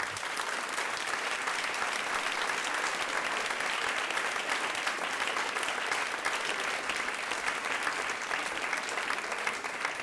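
Audience applauding steadily at the end of a lecture, a dense, even clapping that starts suddenly and eases off slightly near the end.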